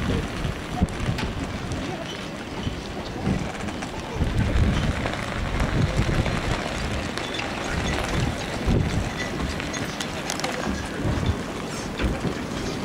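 Wind buffeting the camcorder microphone in uneven gusts, with a general outdoor hubbub and faint voices under it.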